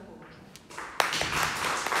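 A small audience applauding, breaking out suddenly about a second in.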